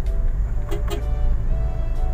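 Inside the cabin of a 2016 Toyota Avanza Veloz 1.5 automatic on the move: a steady low rumble of engine and road noise.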